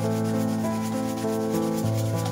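A paintbrush scrubbing and dragging acrylic paint across a stretched canvas, a quick, steady scratchy rubbing. It plays over soft background music with held notes that change every half-second or so.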